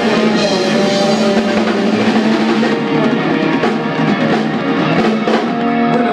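A rock band playing, with the drum kit prominent under held pitched notes from the other instruments.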